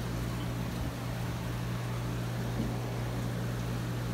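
Steady low hum with an even hiss over it, the running background of aquarium filters and air pumps.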